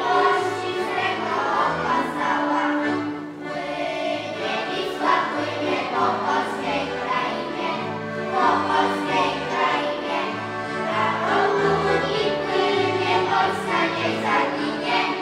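A group of children singing a song, accompanied by accordions playing a steady bass line beneath the tune.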